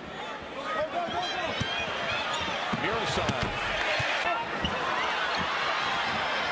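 Basketball game sound on a hardwood arena court: a ball bouncing several times and sneakers squeaking, over a steady crowd murmur.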